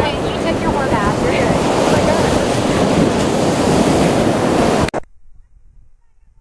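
Strong sea wind buffeting the camera microphone: a loud, steady rumble and hiss. It cuts off abruptly about five seconds in, leaving only faint low sound.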